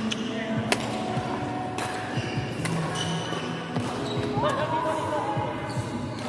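Badminton rackets hitting a shuttlecock in a rally, a sharp crack roughly every second, echoing in a large hall. Players' voices and chatter run underneath.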